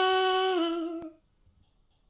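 A single voice singing a wordless held note, like a 'la' or a hum. It drops a step in pitch about half a second in and stops after about a second.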